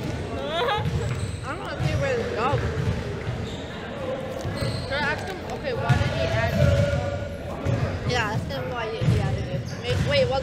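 Basketballs bouncing on a gym floor in repeated low thuds, with voices in the background.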